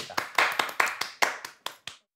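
A few people clapping their hands, a quick run of about a dozen claps that dies away near the end.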